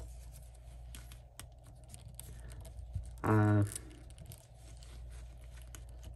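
Hands handling and reposing a plastic action figure with a fabric cape: faint scattered clicks and rustling of the figure's parts and cape. About halfway through there is a short hum from the man.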